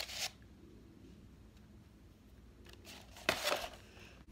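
Paper rustling in short bursts: a brief rustle at the start and a louder one about three and a half seconds in, as crumpled paper and a rolled paper tube are handled.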